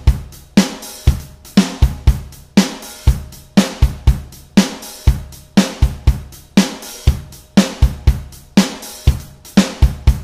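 A software drum kit in Logic Pro playing back a four-bar MIDI beat of kick, snare and hi-hat/cymbal, quantized to sixteenth notes, in a steady rhythm of about two main hits a second and cycling round on a loop.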